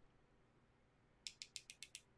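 Near silence, then about a second in a quick run of about seven light clicks: one paintbrush tapped against the handle of another to spatter watercolor paint onto the paper.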